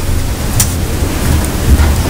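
Steady hiss of room and microphone noise with a low rumble underneath, and one faint tick about half a second in.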